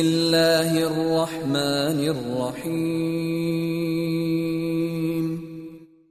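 A man chanting Quranic recitation in Arabic, melodic with a few pitch turns in the first half, then one long held note that fades out near the end.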